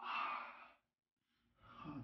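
A man's breathy sighs of pain, twice: one in the first second, and a second one swelling near the end.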